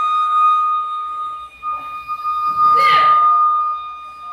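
Steady high electronic beep like a heart monitor's flatline tone, broken briefly about a second and a half in. A short, loud voice-like burst cuts across it near three seconds in.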